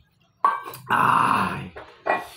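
A person's loud, throaty burp, about a second long, just after a brief sharp sound.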